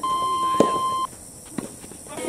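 An electronic beep, one steady tone held for about a second and cut off sharply, with a sharp knock about half a second in.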